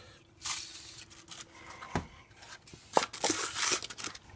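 180-grit sandpaper on a sanding block scraping in short gritty strokes across an oxidized plastic headlight lens wetted with rubbing alcohol, with a sharp knock about halfway through.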